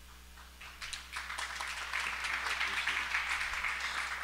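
Congregation applauding: the clapping starts about a second in, builds quickly and then holds steady.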